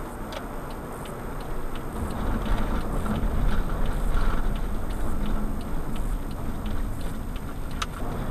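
Road and engine noise inside a minivan's cabin, growing a little louder about two seconds in, with a turn-signal indicator ticking evenly throughout.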